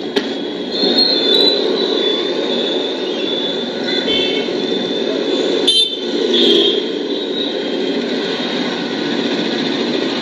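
Street traffic running steadily, with motorbikes and cars passing and a few short horn toots.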